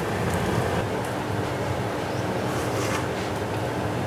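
Steady fan-like whooshing noise with a faint low hum beneath it.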